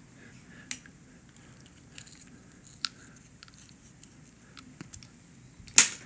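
Quiet handling sounds of gloved hands working carbon fiber grip paste into a bike stem's clamp: a few light clicks and rustles, then one sharp click near the end.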